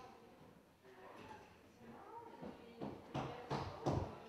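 Faint, indistinct voices of people talking in a room, with a few short, louder knocks or handling noises near the end.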